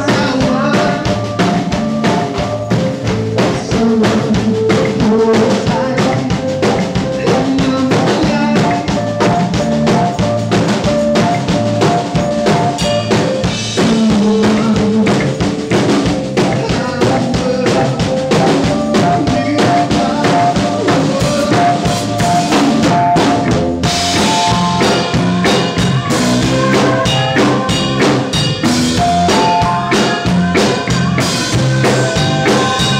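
Live band playing loud music, an upright bass and a drum kit with a busy, steady beat.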